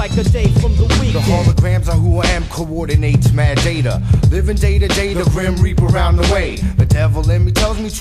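Hip-hop track playing: vocals over a beat with a heavy bass line and regular drum hits.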